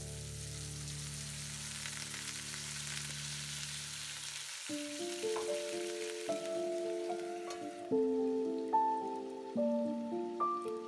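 Chicken thigh pieces sizzling in hot oil in a non-stick frying pan after a few spoonfuls of water are added, with a steady hiss that dies down near the end. Background music plays under it: a held chord, then a melody of separate notes from about halfway.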